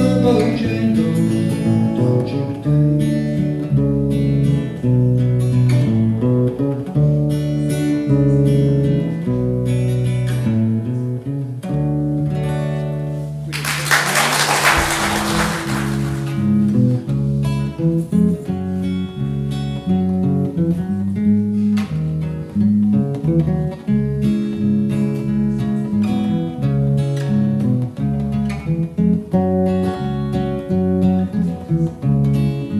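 Acoustic guitar and electric bass playing an instrumental passage of a song with no vocals. A short burst of hiss-like noise cuts in over the music about halfway through, lasting about two seconds.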